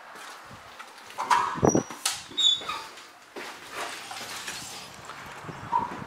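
A metal-framed glass door being pushed open, with a clunk and short high squeaks about a second or two in.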